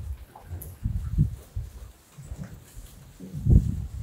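Beef cattle in a barn pen, with irregular low thuds and rustling as the animals shift about, loudest about a second in and again near the end.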